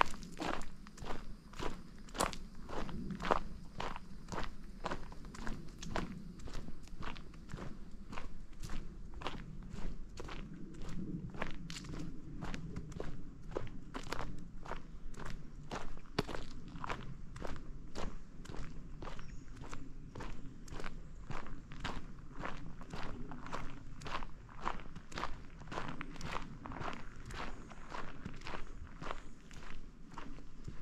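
Footsteps of a hiker walking on a dry dirt forest trail, a steady pace of about two crisp steps a second.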